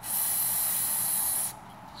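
Aerosol can of brake parts cleaner spraying in one steady burst of about a second and a half, a high hiss that cuts off sharply when the nozzle is released.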